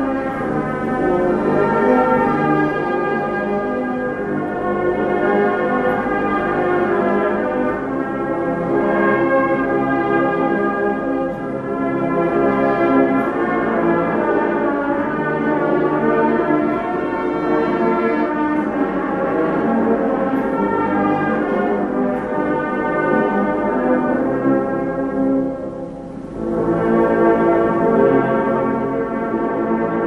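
Brass band playing a slow funeral march, with long held chords, a short quieter moment near the end and then a louder swell.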